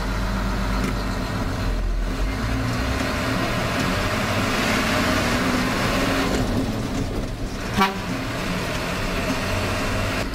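Diesel engine of a Hino four-wheel-drive coach running as the coach pulls away and gathers speed, heard from inside the cab. The engine note rises through the middle and then drops, as at a gear change. A brief toot comes about eight seconds in.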